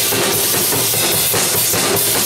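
Clear acrylic drum kit played live in a busy groove: kick drum, snare and cymbals struck in quick succession.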